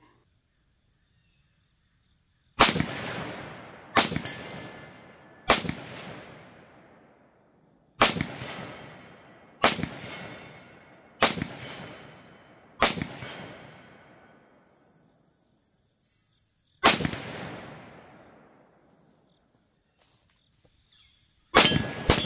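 Nine rifle shots from a 7.62x39 rifle fired freehand, mostly about a second and a half apart with a four-second pause before the eighth and another before the last near the end. Each sharp crack fades over a second or so, mixed with the metallic ring of steel targets being hit.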